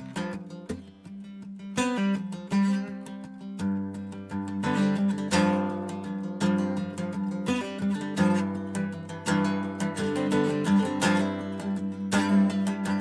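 Steel-string acoustic guitar played solo, chords strummed and picked over a held low note. It is sparse for the first couple of seconds, then fuller strumming picks up.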